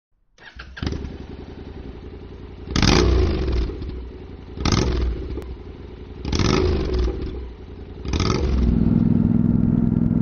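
Honda CTX700 motorcycle's parallel-twin engine idling and being blipped four times, each rev rising and falling within about a second. Near the end it settles into a steady, higher-revving run.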